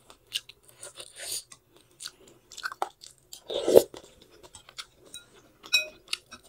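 Close-miked chewing of pork and noodles from thukpa soup: a string of short, wet mouth clicks, with one louder, longer mouth sound about three and a half seconds in. A brief clink of metal cutlery on the glass bowl near the end.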